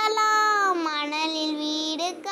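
A child singing a Tamil children's rhyme unaccompanied, holding one long note whose pitch dips about a second in.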